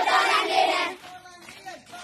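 A crowd of children and women chanting a protest slogan together, loud for about the first second. Then it drops to a quieter single voice calling the next line.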